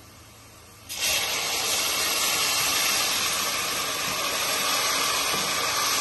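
Tomato puree poured into hot oil and golden-browned onions in a steel kadai, setting off a loud, steady sizzle that starts suddenly about a second in.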